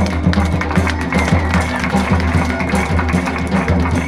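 Live Dogri folk music accompanying a Kud dance: drums keep a fast, steady beat of about three to four strokes a second, with sustained instrument tones over them.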